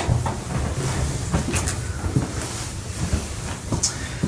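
Rustling and creaking as a person moves from lying to sitting on a padded exam table, with a few small knocks along the way.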